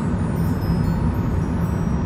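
Steady low rumble of a car's road and engine noise, heard from inside the cabin while driving.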